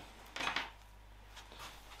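Faint handling noise of a USB cable being moved over a wooden board: a few light clicks and rustles about half a second in, and another soft one later, with quiet between.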